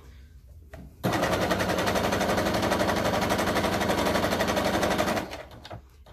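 Electric domestic sewing machine stitching at a steady, fast, even rhythm, starting about a second in and running down to a stop near the end.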